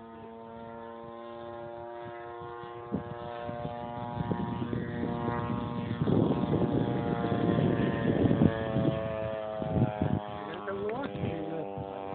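Petrol engine of a large radio-controlled Extra aerobatic model aeroplane flying overhead, a steady drone whose pitch drifts and rises near the end. A stretch of louder rushing noise sits in the middle.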